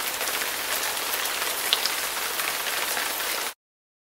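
A steady, even rain-like hiss with a few faint ticks, which cuts off suddenly about three and a half seconds in.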